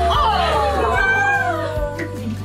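Several women squealing and cooing in excitement, high voices sliding down in pitch over one another, over background music with a steady beat.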